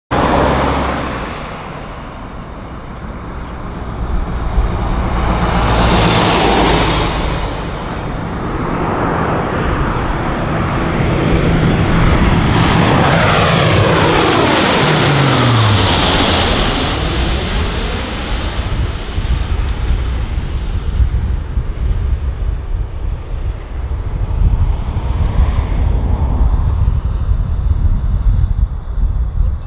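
A Lockheed Martin C-130J Hercules's four Rolls-Royce AE 2100 turboprop engines with six-blade propellers droning loudly as the aircraft comes in low and passes overhead. The propeller tone drops sharply in pitch as it passes, about fifteen seconds in, and goes on as a lower rumble as it banks away.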